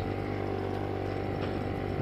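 Motorcycle engine running at a steady cruising speed, a constant drone with no change in pitch.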